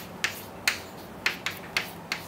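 Chalk striking and writing on a blackboard: about six sharp, irregular taps, one with each stroke as lines are drawn.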